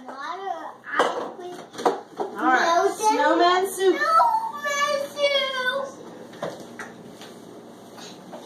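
A young child's high-pitched babbling and vocalising, with no clear words, for most of the clip. A few short light knocks are heard about a second in, near two seconds, and again later.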